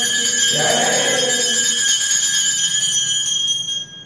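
Puja bell rung continuously during aarti, a steady high metallic ringing that fades out near the end.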